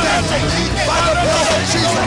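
A congregation praying aloud together, many voices at once, over worship music.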